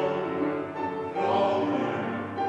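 A bass voice singing in operatic style, with piano accompaniment.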